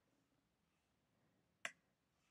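Near silence, broken by one short sharp click about one and a half seconds in, made as the notebook cell is run on the computer.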